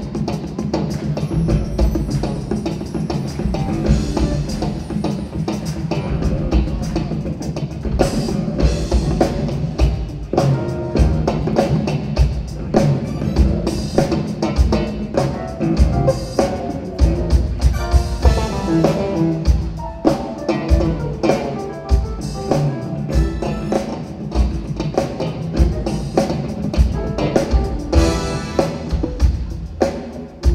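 Live funk band playing: electric bass guitar and keyboards over a drum kit keeping a steady beat.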